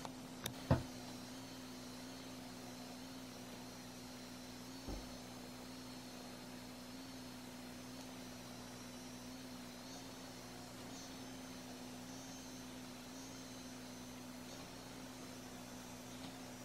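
Foreo Bear facial device's T-Sonic pulsation motor humming steadily at a low pitch while it is held against the skin. A couple of sharp clicks come in the first second, and a soft thump about five seconds in.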